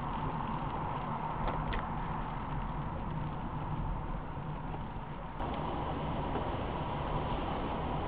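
Steady road noise inside a moving car, picked up by a dashcam: tyres on wet tarmac over a low engine hum.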